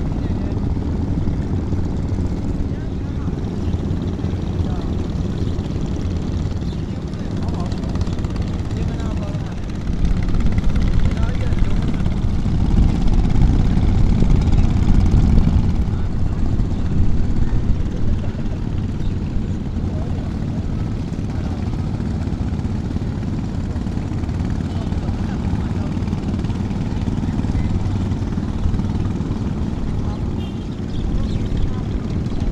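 Small boat engine running with a steady low drone, which grows louder for about six seconds in the middle.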